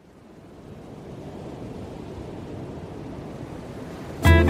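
A steady, surf-like rushing noise with no tune in it fades in from silence over about a second: the sound-effect intro of a country song track, before the music comes in.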